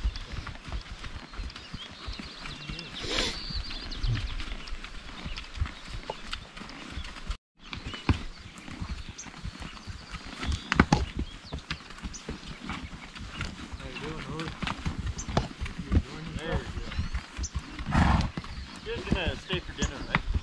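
A horse walking on a soft dirt trail, heard from the saddle: irregular dull hoof knocks with a short louder noise about three seconds in. The sound drops out for a moment about seven seconds in.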